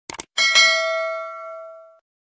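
Two quick mouse-click sound effects, then a notification-bell chime that rings out and fades over about a second and a half: the sound effects of a subscribe animation's cursor clicking the bell icon.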